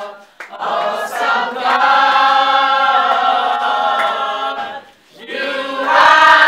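A group of women singing together without accompaniment, holding long notes through the middle of the phrase, with short breaks for breath just after the start and about five seconds in.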